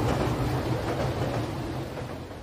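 A train running past: a steady low rumble with a hiss over it, fading away in the second half.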